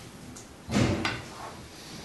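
A loud dull thump about two-thirds of a second in, followed a moment later by a sharper click, over quiet room tone.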